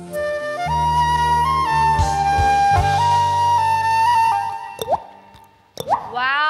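Concert flute playing a slow melody of long held notes over a low sustained accompaniment. The music fades out near the end, broken by a few short clicks and a quick rising sweep.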